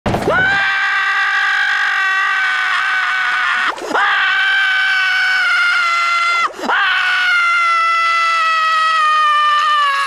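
Cartoon character Squidward screaming: three long, high, held screams, each sliding slowly down in pitch, with a short break before the second and third.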